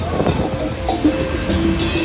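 Loud fairground ride music playing, with a steady low rumble underneath it.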